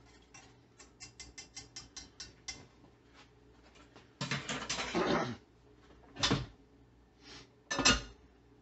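Kitchenware being handled: a quick run of about ten light clicks, then about a second of clattering, and two sharp knocks near the end.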